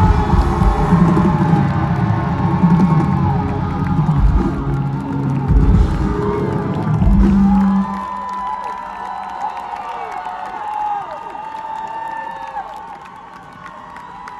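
Live rock band playing loud with drums, bass and electric guitars, ending on a held final chord about eight seconds in. Then the crowd cheers and whoops.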